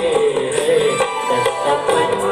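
Live band playing an instrumental passage of a Hindi film song, a melody line over steady accompaniment with no singing.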